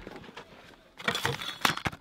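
Short rustles and clicks from plastic-wrapped food packages being picked up and handled, bunched in the second half after a near-quiet first second.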